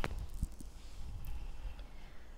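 Soft handling noises as a glass perfume bottle is put away: a sharp click at the very start, a dull knock about half a second in, then faint rustling and a couple of small ticks.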